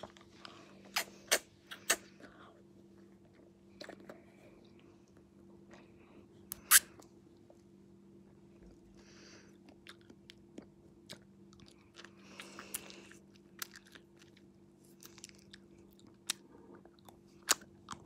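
Close-up mouth sounds of eating an ice lolly: scattered sharp smacks and clicks of lips, tongue and teeth on the ice, with quiet stretches between, over a faint steady hum.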